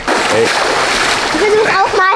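Water splashing and sloshing steadily as a person wades into and settles in a shallow pool.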